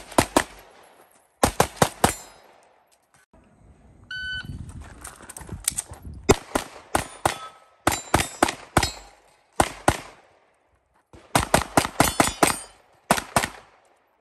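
Pistol fire from a Venom Custom 2011 handgun: several fast strings of shots, two to six at a time, separated by pauses of about a second.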